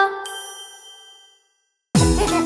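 The closing notes of a short, bright chime-like intro jingle ringing out and fading away over about a second and a half, with a high sparkling ding just after the start. Music starts again at the very end.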